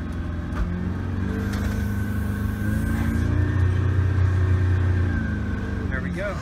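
Boat engine running in gear under throttle while the hull is driven up onto the trailer bunks; its pitch rises about a second in, holds, then drops back near the end.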